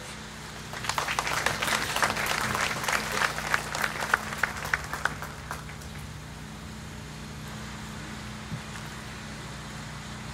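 Audience applause that starts about a second in, thins to a few scattered claps and dies away by about six seconds, leaving a steady low hum.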